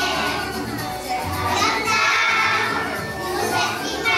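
Recorded backing music with a steady bass line, and a group of young children's voices singing and calling out over it.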